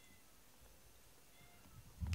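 Near silence: quiet room tone with a couple of faint, brief high tones.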